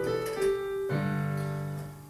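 Slow piano chords ringing out, the notes changing about half a second and about a second in, then fading away near the end.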